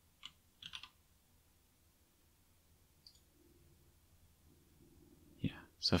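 Computer mouse clicks: one quiet click just after the start, then a quick pair of clicks just before the one-second mark, followed by faint low room hum.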